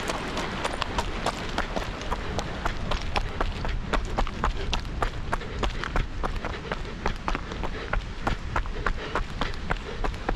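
A runner's footsteps striking a stony fell path, about three steps a second, over a steady low rumble.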